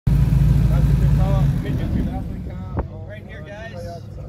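Airboat engine and propeller running loud, then dying down after about a second and a half.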